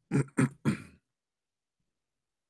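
A man clearing his throat in three short bursts within the first second.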